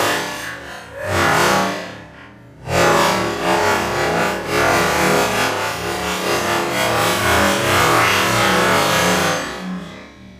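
Loud electronic music, dipping briefly about two seconds in and fading near the end.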